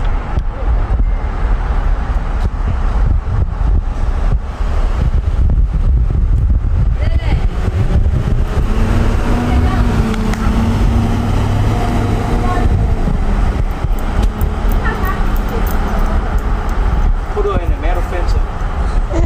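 A steady low rumble of motor vehicle noise, with an engine hum that rises out of it for a few seconds in the middle, and faint distant voices calling now and then.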